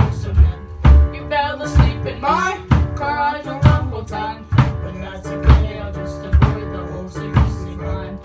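Live band playing a pop-rock song on drum kit, bass guitar and keyboard piano, with a steady kick-drum beat about once a second and a sung line with vibrato in the first half.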